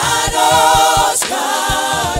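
A gospel worship team sings together into microphones in held notes with vibrato. The notes break and change about a second in, over a low repeating beat.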